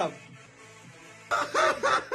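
A man's high-pitched cackling laugh in four short whooping bursts, starting about a second and a half in after a brief lull; the tail of a shouted word falls away at the very start.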